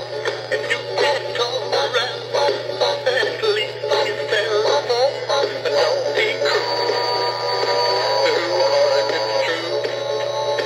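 A Big Mouth Billy Bass song: a male singing voice over a music backing, with a steady low hum underneath. From about six and a half seconds in, steadier held notes join the singing.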